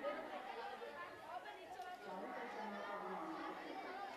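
Chatter of a crowd of schoolchildren talking at once, many overlapping voices with no single speaker standing out.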